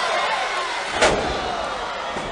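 A wrestler slammed down onto the wrestling ring mat: one loud bang about a second in, over the shouting noise of the arena crowd.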